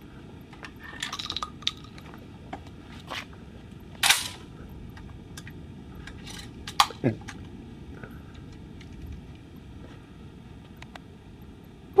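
Mechanical clicks and clacks of a Baikal semi-automatic 12-gauge shotgun being handled and loaded between shots, with a louder clack about four seconds in and another a little before seven seconds.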